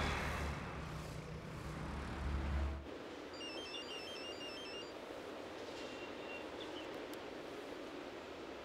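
Low, steady rumble of a car's interior while driving in traffic, cut off abruptly about three seconds in. Then a fainter, even outdoor background with a few faint high chirps.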